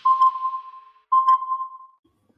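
Two electronic beeps at the same mid-high pitch, one after the other, each starting sharply and fading away over about a second.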